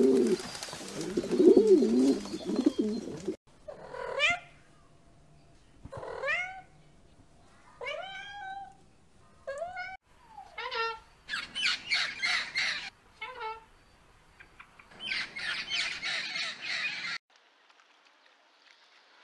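Feral pigeons cooing for the first three seconds or so. Then a blue-and-gold macaw calls: a string of short calls sliding in pitch, then two longer harsh squawks near the end.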